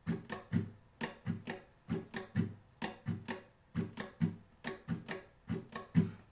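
Acoustic guitar with a capo on the fourth fret, strummed in a steady down-up pattern at the song's full tempo, a regular rhythm of strums several a second.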